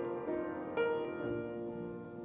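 Piano playing a slow hymn-like passage of chords, a new chord struck about every half second.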